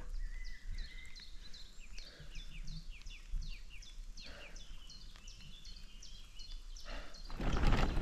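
A bird singing a long run of quick, falling notes, several a second. A louder rush of noise comes in near the end.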